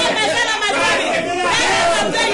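Speech only: a man praying aloud in an unbroken stream of words that the transcript did not catch.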